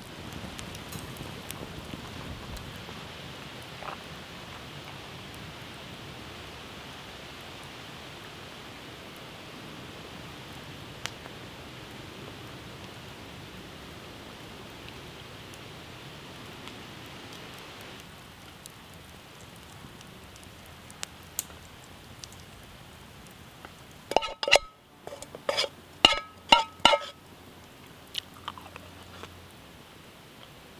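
A person eating and chewing over a steady background hiss. Near the end comes a quick run of sharp clicks with short ringing clinks.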